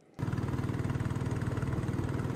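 Small boat engine running at a steady speed with a fast, even pulse. It starts a moment in.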